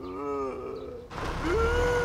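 A man groans in pain, his voice falling in pitch over the first half second. About a second and a half in, a car engine's low rumble sets in.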